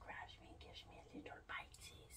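Soft whispered speech from a woman, faint and breathy.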